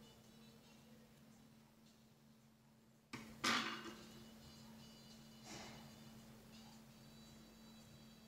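Faint handling sounds of a small metal decoder stick and its thin bolt being worked by hand over a paper sheet: a brief scraping rustle about three seconds in and a softer one about two seconds later, over a faint steady hum.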